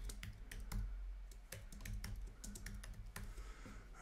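Computer keyboard typing: a faint, irregular run of key clicks as a name is typed out.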